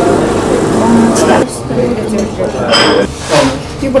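Automatic coffee machine running as it dispenses into a cup, a steady whirring hum that stops about a second and a half in.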